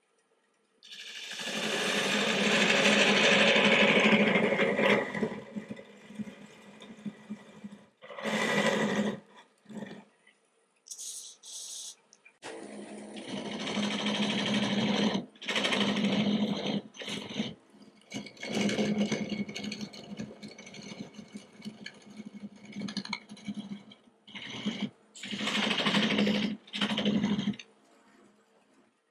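Lathe turning tool cutting into spinning green, spalted aspen near the vase's neck, in repeated passes of a few seconds each with short breaks between them. The longest and loudest cut runs from about one to five seconds in.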